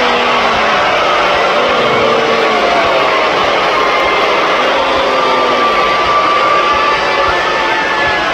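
Large arena crowd making loud, continuous noise, with drawn-out unison voices, chanting or jeering, rising out of it every second or two.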